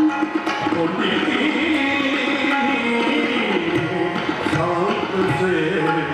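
Gurbani kirtan: a male raagi singing a shabad over a steady harmonium and a tabla keeping a rhythm.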